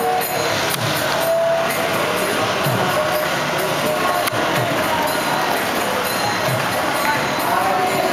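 Street kirtan music with jingling hand percussion, mixed with the voices of a crowd.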